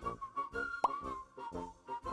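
Background music led by a whistled melody over a steady accompaniment, with one short, sharply rising plop sound effect a little under a second in.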